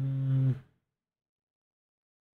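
A man's low, steady 'mmm' hum, held at one pitch and stopping about half a second in, followed by silence.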